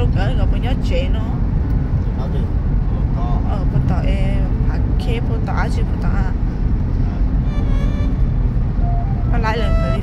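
Inside the cabin of a moving car: a steady low rumble of engine and road noise while driving, with voices talking at times over it.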